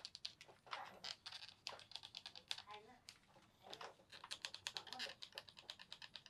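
A small hand tool worked in quick strokes along the leather welt and sole edge of a boot, giving runs of fast, light clicks and scrapes, densest a little past halfway.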